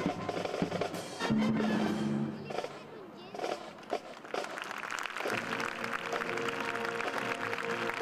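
Military band playing: sustained brass chords with snare and percussion hits. It drops to a quieter stretch of scattered hits midway, then swells into a held brass chord about five seconds in.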